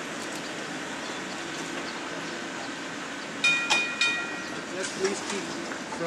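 A PCC streetcar rolling past on its rails with a steady rumble, then its gong rings with three quick strikes about three and a half seconds in.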